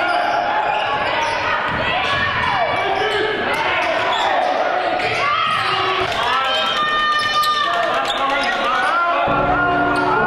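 Basketball bouncing on a hardwood gym floor during game play, amid voices in the gym. Music comes in near the end.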